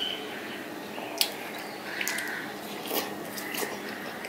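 Close, wet mouth sounds of a person eating soft ripe papaya: squishy chewing and lip smacks, with a few sharp clicks, the loudest about a second in.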